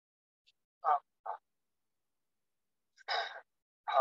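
A man's short audible breaths and voiced exhalations in time with slow qigong movements: two quick ones about a second in, then a longer one near three seconds and another at the very end, with silence between.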